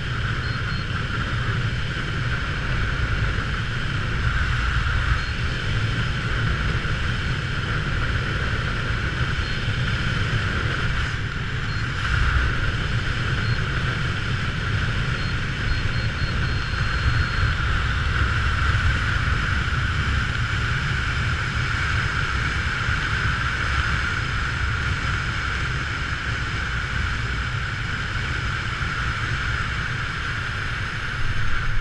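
Steady wind rushing over a helmet-mounted camera microphone during a parachute canopy descent, with a few faint high beeps in the first half.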